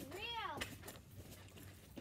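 A single short, high call that rises and falls in pitch, lasting about half a second just after the start, then only faint background.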